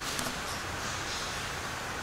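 Steady background hiss with a low rumble and no distinct event, with a faint click near the start.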